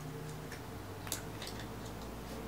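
Faint handling of a small wax melt sample: a couple of light clicks about a second and a second and a half in, over a low steady hum.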